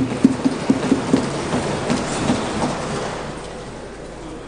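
Members of parliament thumping their wooden desks in approval: a dense, uneven patter of knocks that is loudest at first and thins out and fades over the last second.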